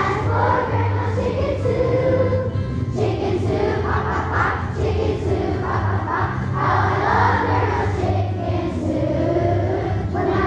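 A large children's choir singing a song together over an instrumental accompaniment with a steady bass line.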